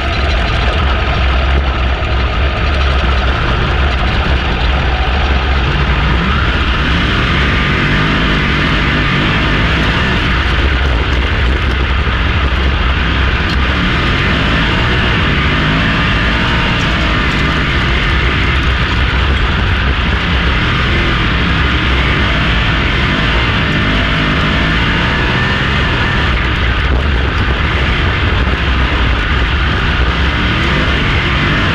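410 sprint car V8 engines at racing speed on a dirt oval, heard from inside the car: a loud, steady engine note from the car and the pack around it, its pitch rising and falling as the cars go through the turns.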